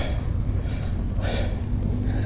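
Motorcycle engine idling with a steady, uneven low rumble.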